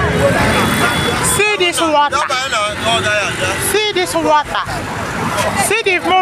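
Voices talking over the running and road noise of a moving keke auto-rickshaw in a busy market street.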